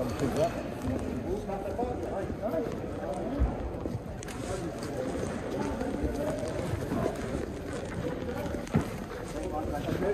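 Indistinct background chatter of several people talking, with a couple of brief knocks.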